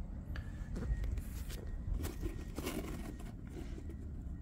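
Faint handling noise: a low steady rumble with a few soft knocks and rustles as a red digital meat thermometer is held up to the camera.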